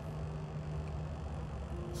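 A steady low hum and rumble, with a faint held tone, in a pause between speech.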